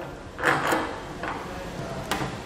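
Light handling sounds of bolt-on mounting hardware on a black ladder-rack base rail: a short scuffing slide about half a second in, then a few faint clicks.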